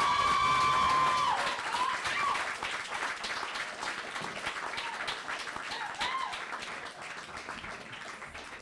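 Audience applauding and cheering for a poet who has just finished, with a long held whoop at the start and a couple of shorter shouts later; the clapping thins out toward the end.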